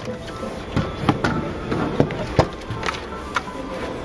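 Background music with about half a dozen sharp, irregular clicks and knocks as the cargo area's tonneau cover panel is handled and lifted.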